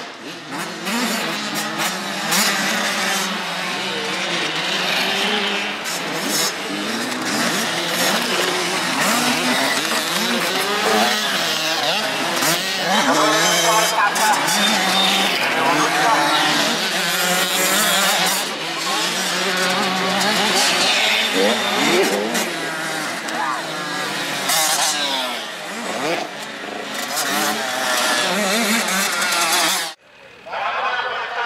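Youth motocross bikes racing on a dirt track, their engines revving up and down again and again as the riders throttle through corners and over jumps.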